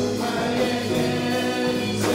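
Live gospel worship music: a man singing into a microphone with many voices singing along, backed by a small band with keyboard.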